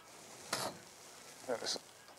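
Paint roller on an extension pole rolling paint across a ceiling, a faint, even hiss. A short louder burst comes about half a second in, and a brief voice sound follows about a second later.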